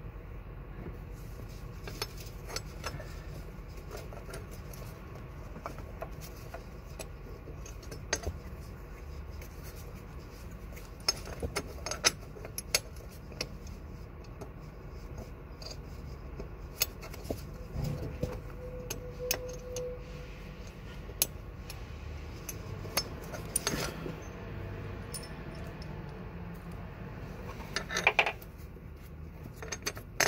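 Irregular metallic clinks and taps of bolts and hand tools being handled at a car's engine mount, with a tighter cluster of clinks near the end, over a steady low hum.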